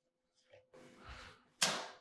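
A knife cutting along a sea bass fillet to take out its side pin bones: faint scraping, then a short sharp swish about one and a half seconds in that fades over half a second.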